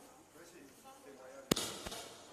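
A sharp knock about one and a half seconds in, then a brief rustling noise with a second, smaller knock, over faint murmured voices.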